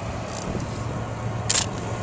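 A single shutter release of a Nikon DSLR, a short sharp click about one and a half seconds in, over a steady low rumble.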